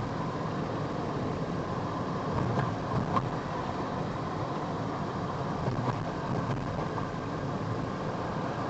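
Steady road and engine noise heard inside a car's cabin while cruising at low speed.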